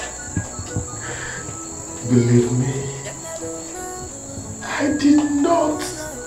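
Steady high-pitched cricket chirring over soft background music, with a man sobbing twice: about two seconds in and again near the five-second mark.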